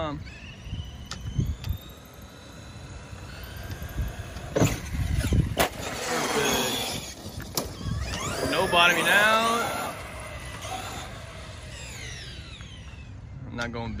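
Traxxas Revo 2.0 electric RC truck driving on asphalt: its electric motor whines up and down in pitch as it speeds up and slows, with tyre noise and a few sharp knocks in the middle.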